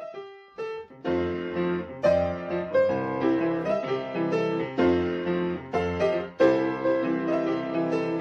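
Piano music: a few single notes, then a fuller passage with a bass line from about a second in.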